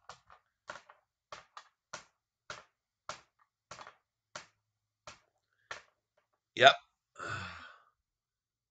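A dozen or so light, sharp clicks at an uneven pace, about two a second, then a short spoken "yep" and a breathy sigh near the end.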